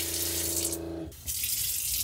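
A kitchen tap running into a stainless sink while air is bled from a freshly refilled camper water system, with the 12 V water pump humming steadily under it. The hum falls away about a second in, leaving the water running.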